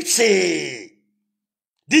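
A man's voice: one drawn-out, breathy exclamation that falls in pitch and stops just under a second in, then dead silence until he starts talking again at the very end.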